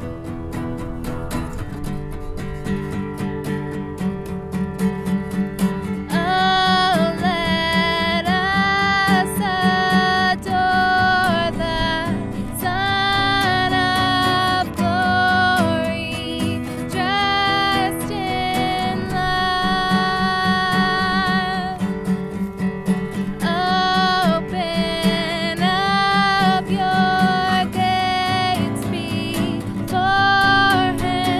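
Acoustic guitar strummed steadily, joined about six seconds in by a woman singing, in long held phrases with short breaks between them.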